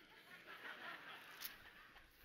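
Faint, scattered chuckling from a congregation reacting to a joke, with a single faint click about a second and a half in.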